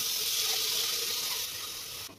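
Chopped vegetables tipped from a wooden board into hot oil in a steel pot, sizzling loudly as they hit. The hiss starts suddenly and eases slightly near the end.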